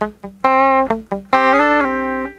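Electric guitar playing a few short, muted notes and then a held two-note shape that slides up and back down, ringing out at the end.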